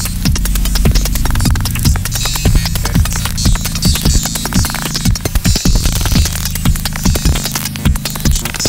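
Live electronic music: a steady low drone of several bass tones under fast, irregular clicks and patches of high hiss.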